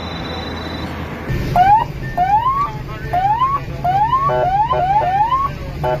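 Police car siren sounding short rising whoops in quick succession, starting about a second and a half in, over a steady low engine and road drone.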